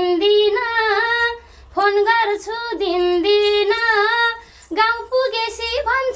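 A woman singing a Nepali folk (dohori) melody in a high voice, in phrases of held, wavering notes, breaking off briefly twice.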